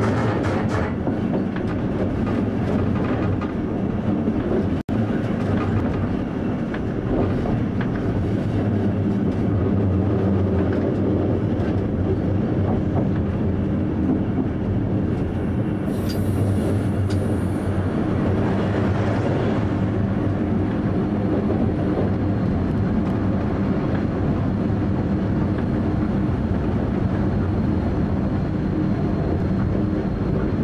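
Train running, heard from inside the driver's cab: a steady hum with rail clatter over joints and points. There is a brief high-pitched hiss about halfway through, and the sound drops out for a moment about five seconds in.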